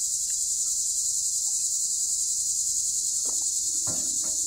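A steady, high-pitched chorus of evening insects such as crickets, with a fast even pulse. There are a couple of faint knocks near the end.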